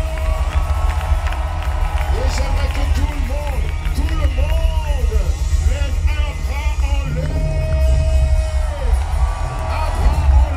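Live concert music with a heavy, booming bass and a voice gliding through arching melodic lines, over a cheering audience, recorded from among the crowd.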